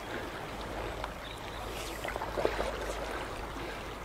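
River water running in a steady, even rush, with a faint low rumble underneath.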